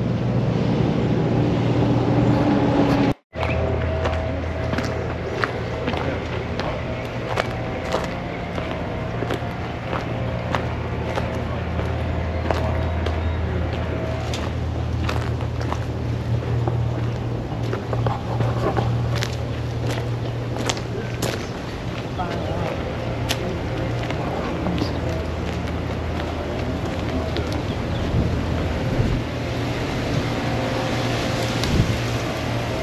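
Walking outdoors: short scattered crunches and clicks of footsteps on a sandy path over a steady low hum, with faint voices.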